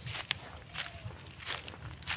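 Footsteps of a person walking, a few uneven crunching steps.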